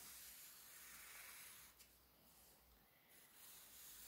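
Near silence: a graphite pencil faintly scratching on paper as straight lines are drawn, stopping for about a second near the middle.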